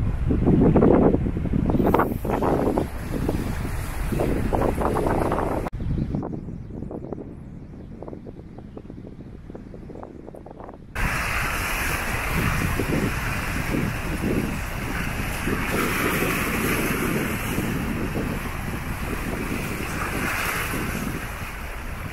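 Wind buffeting the microphone over the wash of the sea on a rocky shore. The sound drops away suddenly about six seconds in and comes back about eleven seconds in as a steadier surf hiss.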